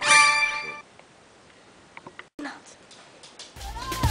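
A bright bell-like ding rings once at the start and fades out within a second, followed by a quiet stretch with a few faint short sounds; music comes in near the end.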